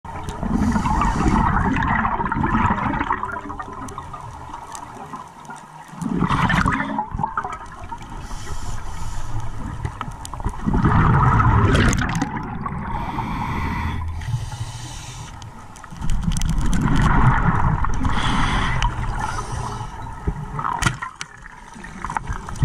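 Scuba diver breathing through a regulator underwater. A loud rush of exhaled bubbles comes about every four to five seconds, five times, with quieter stretches between.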